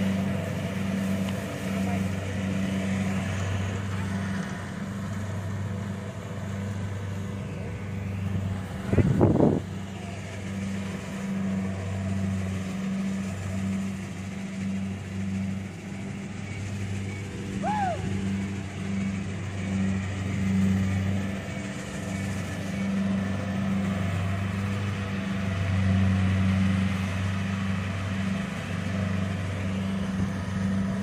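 Rice combine harvester's engine running steadily under harvesting load, its low hum swelling and easing every few seconds. A brief loud burst comes about nine seconds in.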